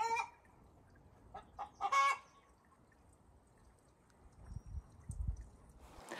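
A few short chicken clucks: one at the very start, a few quick ones around a second and a half in, and the loudest at about two seconds. A faint low rumble follows near the end.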